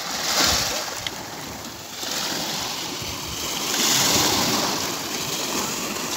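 Small sea waves breaking and washing up over a pebbly beach. The surf rises loudest about half a second in and again around four seconds.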